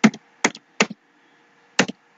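Computer keyboard keys being typed slowly: four separate keystrokes, three in the first second and the last after a pause of about a second, some with a quick second tick as the key comes back up.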